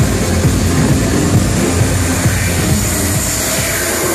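Loud electronic dance music from a live DJ set, playing over a large hall's sound system, with a heavy bass beat.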